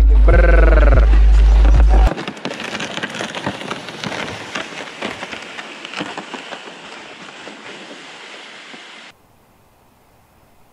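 Hip-hop music with heavy bass and a rapping voice for about two seconds, then an abrupt cut to the crunching and scraping of boots and sleds dragged across snow-crusted lake ice. The crunching is a dense crackle that fades steadily as the walkers move away and stops at a cut near the end.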